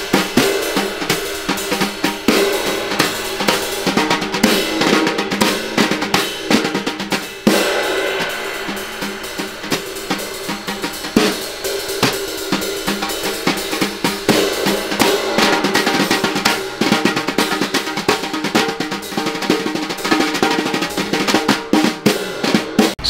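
Jazz brushes played on a snare drum and a cymbal. The brushes keep a continuous pattern of sweeps and taps across the drum head, with strokes on the cymbal.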